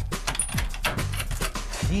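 A rope-pulled wooden trapdoor mechanism in a tunnel ceiling clattering and knocking as it is worked open, a run of short knocks and rattles. A low music bed runs underneath.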